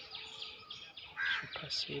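Birds chirping in quick, evenly repeated notes, about five a second, with one louder call a little past halfway; a man's voice begins near the end.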